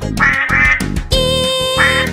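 Two quick duck quacks in the children's song, then a long held note over the music, and another quack near the end.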